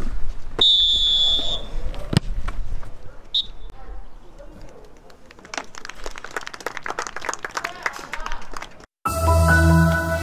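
Referee's whistle blowing full time: one long blast near the start and a short blast a couple of seconds later, over players' voices. Clapping follows midway, and a music jingle starts near the end.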